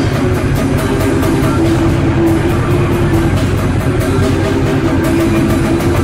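Raw black metal recording: distorted guitars and drums playing dense, loud and steady, with sustained low notes under a regular drum beat.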